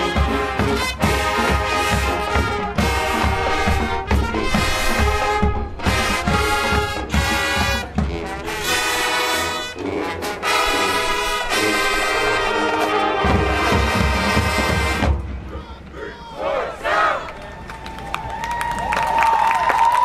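A high school marching band's brass and drumline play loudly, with heavy drum hits. The music cuts off about fifteen seconds in, leaving crowd noise and cheering from the stands.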